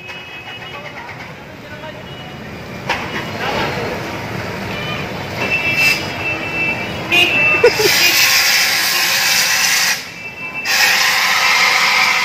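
Handheld fire extinguisher discharging in two long hissing bursts, the first starting about eight seconds in and the second after a short pause of under a second. Before it, quieter voices and street traffic.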